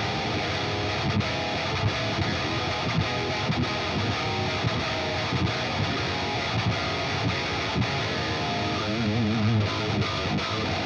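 Seven-string electric guitar in drop A-flat tuning playing a distorted metal riff through the Fortin Nameless Suite amp plugin, with its Grind boost pedal engaged and a noise gate after it.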